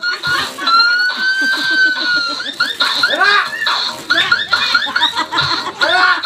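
A group of young children calling out and laughing together in high voices, with one child's long high-pitched call held for nearly two seconds starting about a second in.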